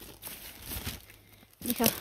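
Close, irregular crinkling and rustling of dry material, stopping about one and a half seconds in as a woman speaks briefly.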